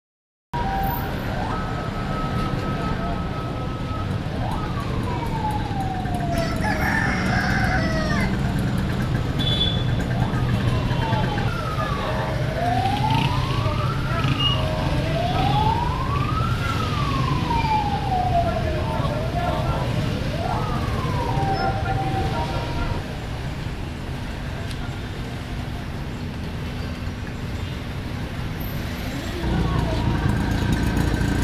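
Busy street traffic rumbling steadily under a siren-like wailing tone. The tone slides down once, then rises and falls several times, each sweep about two seconds long.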